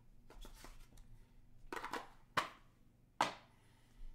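Hands handling a cardboard trading-card box and a stack of cards on a table: light rustling and small clicks, then two sharp taps about a second apart, the loudest sounds.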